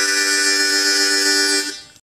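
Harmonica holding one long chord, which stops and fades out near the end.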